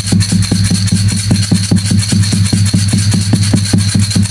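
A fast, even percussion beat of about six strokes a second over a low steady hum: the instrumental lead-in of a traditional ceremonial song, before the voices come in.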